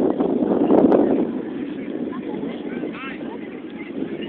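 Indistinct, distant shouts from players and spectators at an outdoor youth soccer match, over a loud rumbling noise on the phone's microphone that eases off after about a second.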